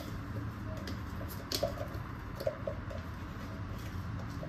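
Light scattered clicks and taps from handling a jar of peanut butter and its screw lid as it is opened, over a low steady hum.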